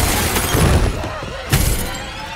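Loud splintering crash of wooden floorboards breaking as a hand bursts up through them, with a second crash about one and a half seconds in.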